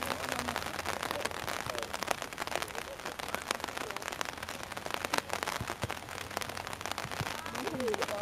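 Steady crackling noise on a camcorder microphone at an outdoor football pitch, with faint distant voices of players and spectators.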